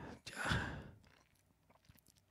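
A man's breathy sigh close to the microphone, lasting about half a second, followed by a few faint clicks.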